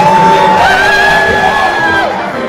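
Music with a voice holding a long note, then sliding up to a higher note held for over a second, over a cheering, clapping crowd.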